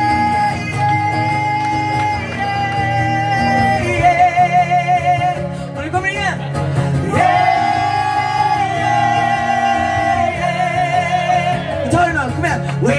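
A woman singing long held notes over a strummed acoustic guitar, each note wavering with vibrato as it ends. The voice breaks off briefly about six seconds in before the next long note.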